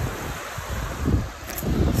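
Wind buffeting the phone's microphone in uneven low gusts, over the steady rush of a river running over rocks.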